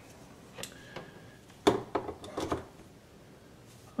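A few light clicks and knocks, the loudest a little before halfway, as an electrical plug is pushed into a wall outlet and handled.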